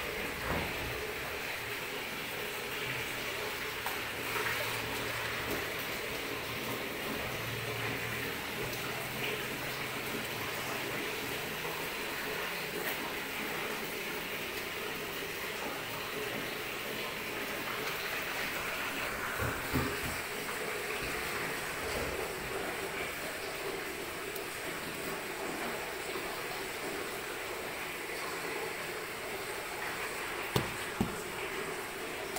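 Steady rushing, water-like noise of soybean steaming drums: steam and boiling water under cloth-covered soybeans during the second cooking for tempeh.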